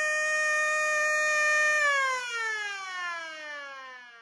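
Siren holding one steady tone, then winding down in pitch and fading away from about two seconds in.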